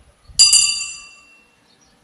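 A single bright metallic ring, struck once and fading away over about a second.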